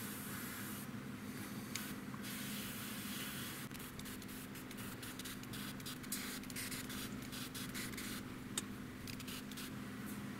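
Airbrush hissing as the darker paint mix is sprayed out of it to clear the cup. The hiss drops out briefly twice near the start, then flickers on and off.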